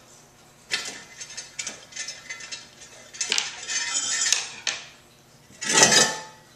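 Ceramic birdhouse being taken apart by hand: threaded brass rods sliding out and ceramic pieces clinking and scraping against each other, ending in a louder clunk.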